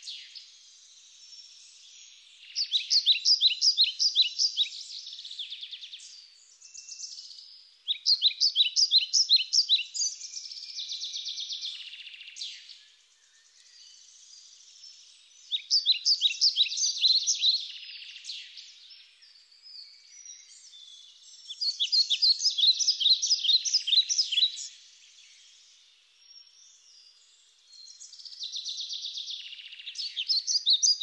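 A bird singing: phrases of rapid, high, repeated notes, each about two to three seconds long, come back roughly every six seconds, with fainter chirps between them.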